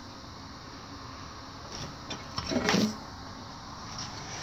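Quiet room tone: a steady low hiss, with one brief soft sound about two and a half seconds in.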